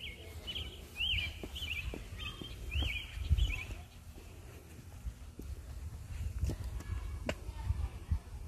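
A small bird chirping: a quick run of about eight rising-and-falling chirps in the first three seconds, over a low rumble on the microphone and light footsteps.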